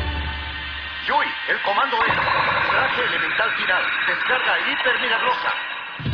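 The low, bass-heavy soundtrack music drops away. About a second in, several overlapping voices come in, rising and falling in pitch over a bright, shimmering wash of sound.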